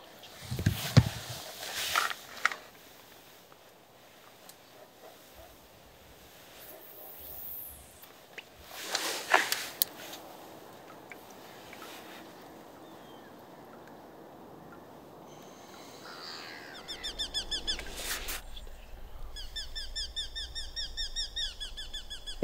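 A few brief knocks and swishes in the first couple of seconds and again about nine seconds in. From about seventeen seconds, a bird calls in a fast run of repeated high chirping notes, about four a second.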